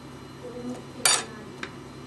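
A single short metallic clink about a second in: the steel blade of a shoemaker's skiving knife knocking against the stone slab on which a leather stiffener is being skived.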